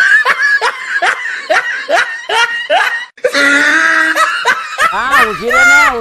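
A man laughing loudly: a long held cry, then a quick run of short rising 'ha' bursts, then another long cry that breaks into wavering laughter near the end.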